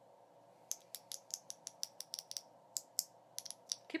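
A quick, irregular run of about twenty light, sharp clicks and taps, beginning just under a second in, over a faint steady background hum.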